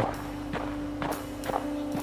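A runner's footfalls, soft knocks about every half second, over a low held note of background music.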